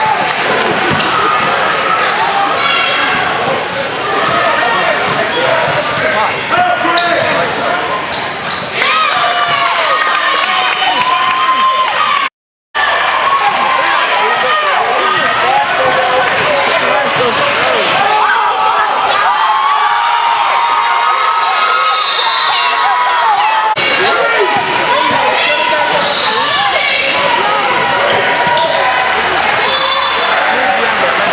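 Live game sound of a youth basketball game on a hardwood gym court: a basketball dribbling, sneakers squeaking, and players and spectators calling out. The sound cuts out completely for a moment about twelve seconds in.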